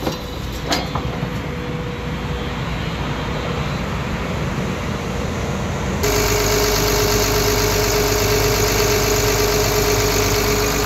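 Caterpillar excavator's diesel engine idling, with a few sharp clicks about a second in. About six seconds in, the sound jumps to a louder, steadier run with a fixed whine, heard close up in the open engine bay.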